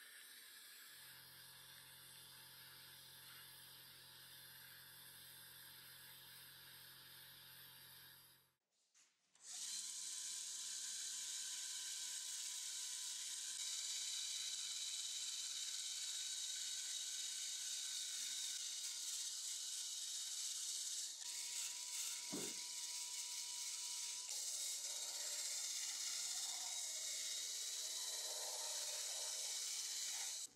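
Cordless rotary tool spinning a brass wire wheel against a steel lathe chuck and its jaws to strip rust: a steady high whine with a scratchy brushing noise. It starts about nine seconds in, after a faint hiss and hum from a sandblasting cabinet and a brief silence.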